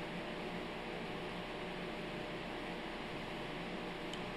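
Steady, even background hiss of room tone, with no distinct clicks or handling sounds.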